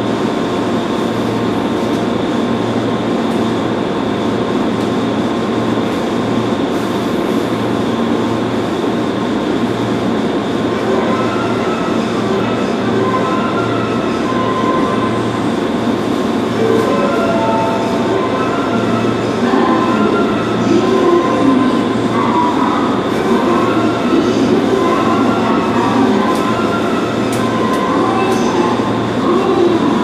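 An electric train standing at the platform, its on-board equipment humming steadily with a regular low throb. Faint scattered tones come in during the second half.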